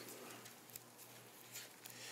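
Near silence: quiet room tone with a faint steady low hum and a few faint soft ticks from hands moving at a wooden lectern.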